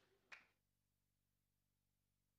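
Near silence, broken by one faint short click about a third of a second in, after which the sound drops to dead silence.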